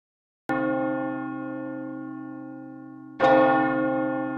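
Bell struck twice, about two and a half seconds apart; each stroke rings out with many tones and slowly fades.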